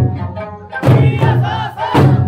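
Eisa performance: large Okinawan barrel drums are struck together about once a second over the accompanying folk song. Singing and shouted calls from the performers wave above the drum beats.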